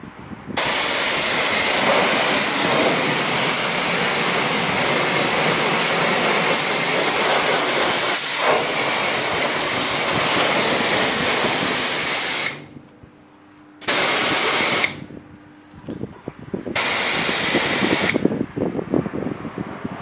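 Pressure-washer lance spraying water onto a car's bodywork: a loud, steady hiss. It starts about half a second in, then cuts out and restarts three times in the last third.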